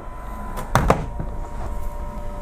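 The clear front door of an UP Mini 2 3D printer being swung shut, closing with one sharp knock a little under a second in.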